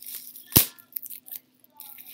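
Bubble wrap being pulled off a small bottle, crackling, with one loud sharp snap about half a second in and a few lighter clicks after.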